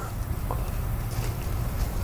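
Steady low outdoor background rumble with a few faint light clicks as the plastic oil filter housing cap is handled.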